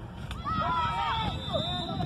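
Children's voices calling and shouting across a football pitch, several at once and too far off to make out words, getting louder about half a second in, over a low steady rumble of wind or distant traffic.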